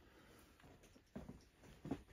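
Near silence in a small room, with a few faint, brief rustles about a second in and again near the end.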